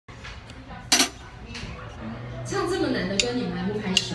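Restaurant room sound: murmured voices and the clink of dishes and cutlery, with two sharp clicks close together about a second in, over a steady low hum.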